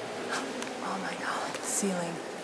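Hushed, whispered voices in broken fragments over a steady room hiss, with a sharp hiss like a whispered 's' near the end.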